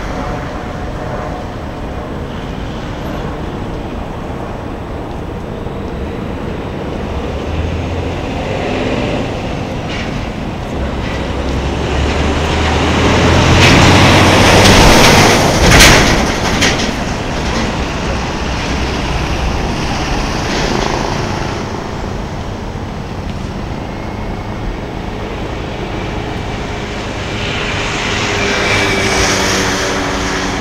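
Steady urban traffic rumble, with one vehicle passing close that builds to the loudest point about halfway through, a brief sharp knock at its peak, then fades back into the general traffic noise.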